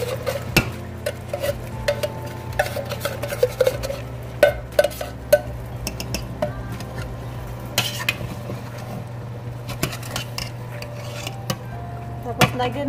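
A long-handled metal spoon stirring chicken and coconut milk in a stainless steel pot, with irregular clinks, knocks and scrapes of metal on metal. A steady low hum runs underneath.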